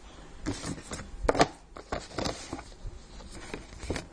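Packaging being handled: irregular rustles and clicks of plastic and cardboard, with a sharper knock about a second and a half in.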